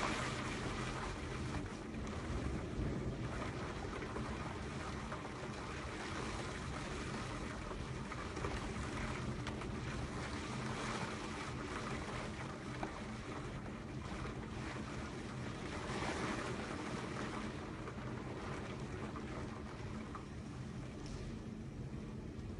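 Rough sea: steady noise of waves and surf with wind buffeting the microphone, swelling a little at times.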